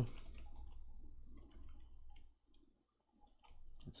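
Faint, scattered clicks of a computer keyboard and mouse, a few keystrokes and clicks with short gaps between them.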